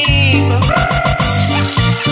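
Cumbia dance music from a continuous DJ mix, with a repeating bass pattern under held melody notes.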